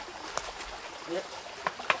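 Wood campfire crackling, with three sharp pops, the loudest near the end, over the steady sound of a small stream.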